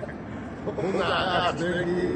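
An elderly man talking in Chechen, in short phrases with brief breaks.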